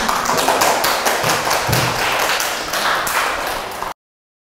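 Audience applauding: many hands clapping densely, stopping abruptly just before the end.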